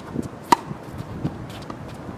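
A tennis ball struck with a racket on an outdoor hard court: one sharp pock about half a second in, with faint shoe scuffs around it.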